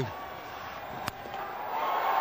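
A single sharp crack of a cricket bat hitting the ball about a second in, over a stadium crowd that starts to swell toward the end.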